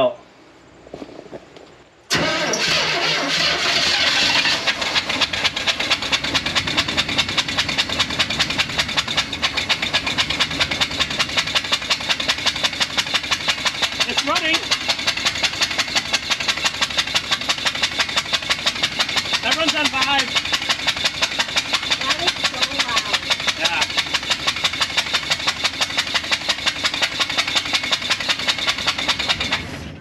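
The GMC P15 step van's 292 straight-six catches about two seconds in and runs with a loud, rapid, even pulsing beat, shaking the whole truck, until it cuts off near the end. One spark plug is out, so that cylinder blows its compression out of the open plug hole on every stroke instead of making power. The owners suspect a head gasket problem behind the water in that cylinder.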